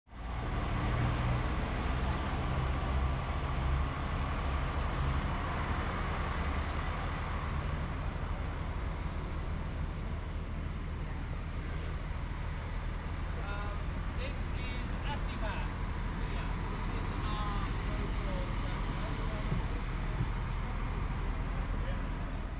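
Tour coach's engine idling close by, a steady low rumble, with street traffic noise around it. People's voices come in over it about halfway through.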